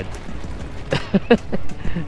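A man laughing briefly, a few short chuckles about a second in.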